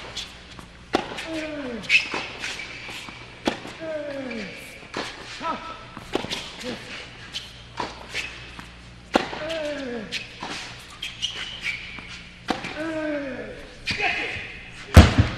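A tennis rally on an indoor hard court: rackets strike the ball and it bounces every second or so. A player grunts on several strokes, each grunt short and falling in pitch. The sounds echo in the hall.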